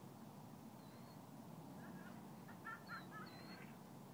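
A few faint short bird calls over a low steady outdoor hiss.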